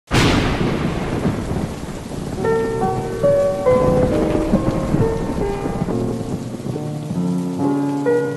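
A thunderclap at the very start rumbles away over a second or so, over steady rain. Soft sustained keyboard notes come in after about two seconds and play a slow intro over the rain.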